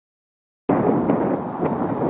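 Wind buffeting the microphone outdoors, a loud uneven rumbling noise that cuts in abruptly just under a second in.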